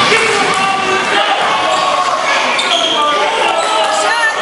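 Sounds of a basketball game in a gym: the ball bouncing on the court amid overlapping shouts and calls from players and spectators, echoing in the hall.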